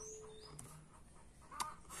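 Faint bird chirps, a few quick high notes gliding in pitch at the start, over a quiet garden background, with one short click near the end.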